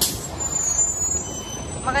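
Articulated city bus close by: a short, sharp hiss of air brakes right at the start, then steady engine and traffic noise.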